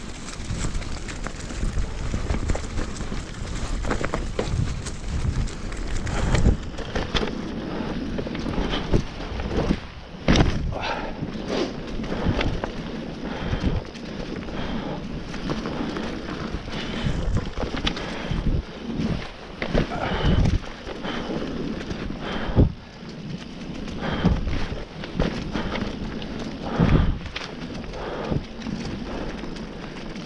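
Specialized enduro mountain bike ridden fast down a leaf-covered dirt trail: tyres rustling and crackling through dry fallen leaves, with wind on the microphone and frequent irregular knocks and rattles from the bike over bumps.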